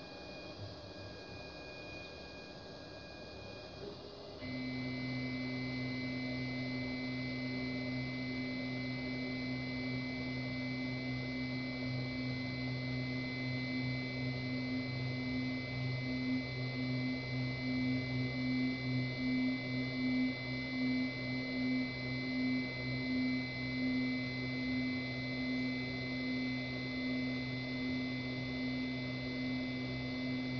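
Stepper motors of a CNC 6040 router driving its axes slowly during a homing run toward the new limit switches. A steady whine at one pitch comes in about four seconds in and wavers in loudness midway.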